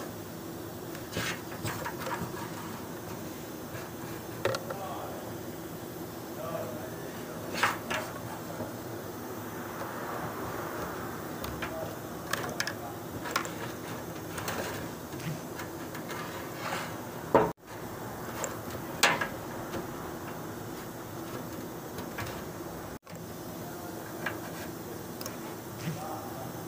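Scattered clicks and light knocks of a plastic diesel fuel pump and level-sender assembly being handled and turned over in the hands, over a steady background hum.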